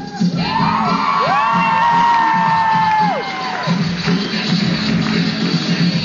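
Music with a steady beat, and over it a crowd whooping and cheering with long, held calls that rise at the start and fall away after about three seconds.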